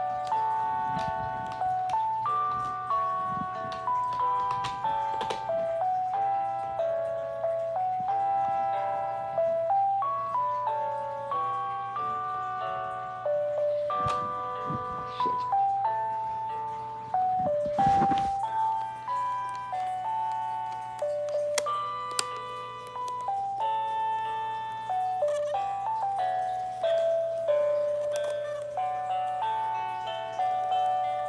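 Battery-powered musical baby toy playing a simple electronic melody of stepped, chime-like notes without a break, now that it has fresh batteries. A few knocks from handling the toy come through, the loudest about eighteen seconds in.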